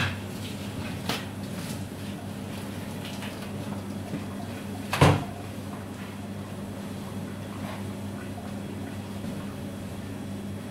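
A steady low hum with a few sharp knocks off-camera: one right at the start, a smaller one about a second in, and the loudest about five seconds in.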